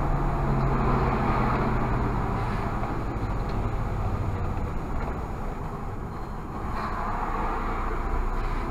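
Irisbus Citelis CNG city bus driving, heard from the driver's cab: a steady low engine note with road noise, easing off about halfway through as the bus slows, then picking up again near the end.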